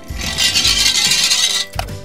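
Small toy cement-mixer truck rolling fast down a plastic ramp with a loud scraping rush, ending in a sharp plop as it drops into shallow water, over background music.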